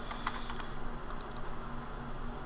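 Computer keyboard keys tapped a few times in quick succession, mostly in the first second, over a steady low hum.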